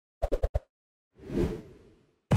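Animated intro/outro sound effects: a quick run of four short pops in the first half second, then a whoosh that swells about a second in and fades away.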